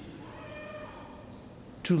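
A pause in a man's sermon, with the hum of a large, echoing church hall and a faint, thin, high sound held for about a second. Near the end, the man's voice comes back in.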